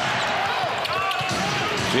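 A basketball being dribbled on a hardwood court, with the steady noise of an arena crowd throughout.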